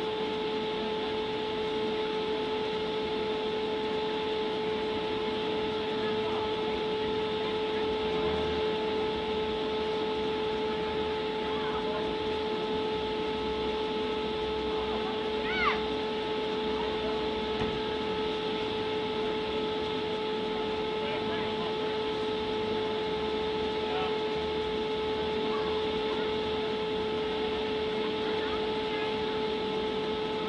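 A steady hum over indistinct background voices. A short chirp sounds a little past halfway.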